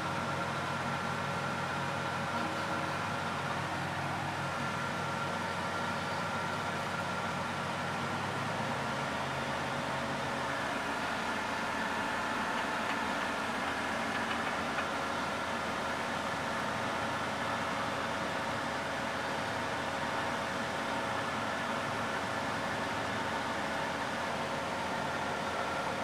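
Combine harvester working in spring wheat, heard from inside a cab: a steady machinery drone with several held tones, its low engine hum shifting a third of the way in.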